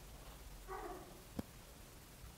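Quiet room tone, with one faint, brief unidentified sound a little under a second in and a single light click about three quarters of the way through.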